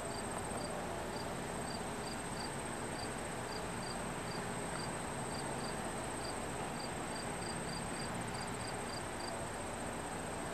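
Insects calling: a steady high trill with shorter chirps repeating about twice a second, over a steady background hiss.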